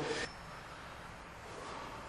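A man's voice breaks off abruptly at the very start, then only faint, steady room noise with no distinct event.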